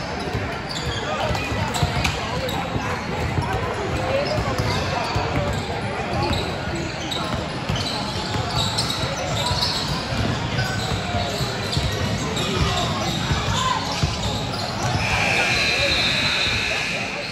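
Basketball game sounds in a gym: a ball bouncing on the hardwood floor while players and spectators talk and call out, echoing in the hall.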